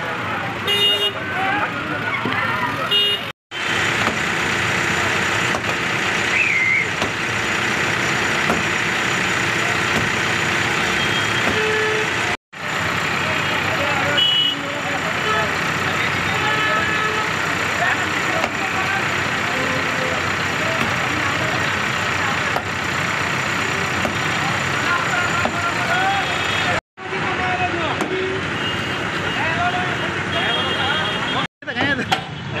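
Busy street noise: many people talking at once over passing vehicles, with a few short car-horn toots. The sound cuts out completely for a moment three times.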